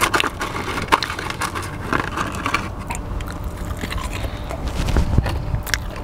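Close-miked chewing and biting of Popeye's Cajun fries: irregular moist crunches and mouth sounds, over a steady low hum.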